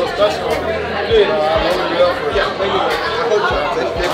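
Several people talking over one another in a busy room, with a man saying "thank you, man."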